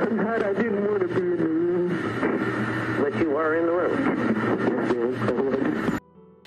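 A man speaking in a recorded interview, the audio somewhat lo-fi with a steady low hum beneath the voice.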